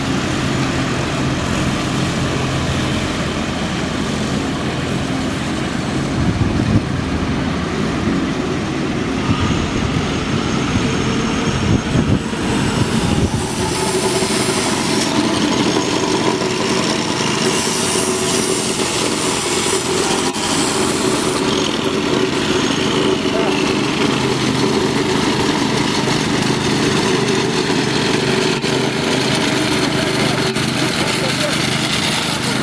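Construction machinery engines running steadily, with the sound changing a little before halfway. In the later part, the small petrol engine of a vibrating plate compactor and a road roller are working fresh asphalt.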